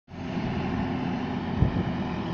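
New Holland T3.75F tractor's diesel engine running steadily, with a single thump about a second and a half in.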